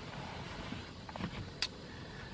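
Low, steady background noise inside a car cabin, with a few faint small rustles and one short sharp click a little past the middle.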